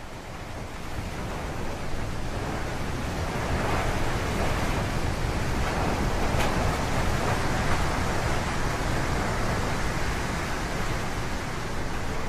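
Steady rushing ambience of wind and sea surf, fading in over the first couple of seconds and then holding even.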